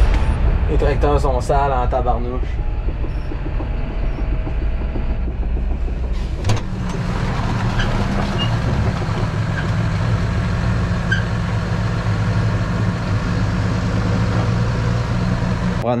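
Tractor engine running steadily, with a single sharp knock about six and a half seconds in.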